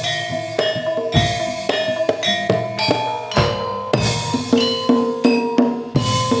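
Live Javanese jaranan accompaniment: drums beating a steady pattern under ringing struck metal notes that change every fraction of a second, with a few deep drum strokes.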